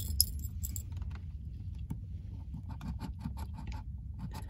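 A metal coin-shaped scratcher scraping the coating off a scratch-off lottery ticket in quick, repeated short strokes, over a low steady hum.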